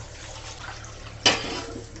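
Warm tap water running steadily into a steel bowl of blanched beef chunks as they are rinsed in a stainless steel sink. One sharp metallic knock about a second in.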